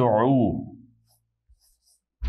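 A man's voice drawing out a syllable for the first half second, then faint short squeaks of a marker writing on a whiteboard.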